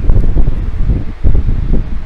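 Loud, uneven low rumbling noise on the microphone, with rustling flickers.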